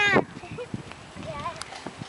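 A child's high-pitched shout falling in pitch and cutting off just after the start, followed by faint children's voices and a few light knocks.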